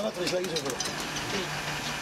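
Old Mercedes-Benz bus diesel engine running steadily, heard from inside the cab, with a man's voice faintly over it early on.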